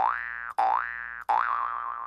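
Cartoon 'boing' comedy sound effect: a twangy tone that starts with a click, slides upward in pitch and fades, heard three times about 0.7 s apart.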